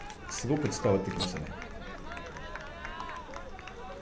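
People shouting and calling out on an outdoor football pitch as a goal is celebrated, over the open-air ambience of the ground. A louder voice comes in the first second or so, then fainter calls.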